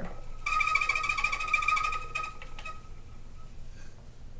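Treadle spinning wheel plying yarn: the flyer and bobbin whirring with a steady high whine over a fast rattle. The whir lasts about two seconds and then dies away as the wheel stops, with a couple of light clicks.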